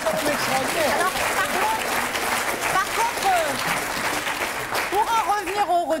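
Studio audience applauding, with laughter and voices over it.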